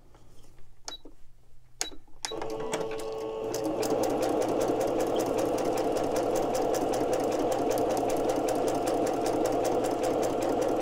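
A couple of light clicks, then about two seconds in an electric computerized sewing machine starts and runs steadily at slow speed with an even, rapid stitching rhythm, sewing a scrap of lace onto paper.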